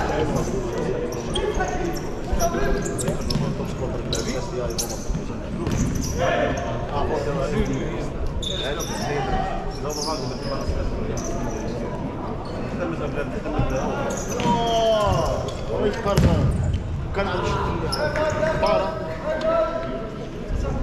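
Futsal ball being kicked and bouncing on a sports-hall court, the hits echoing in the hall, over spectators' chatter.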